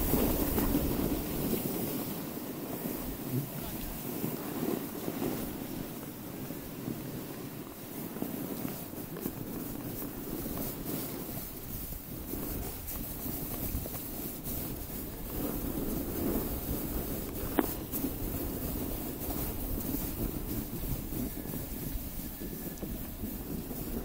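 Wind rumbling on the microphone of a camera moving downhill on snow, with the steady scrape of snow sliding underfoot. A single sharp knock about three-quarters of the way through.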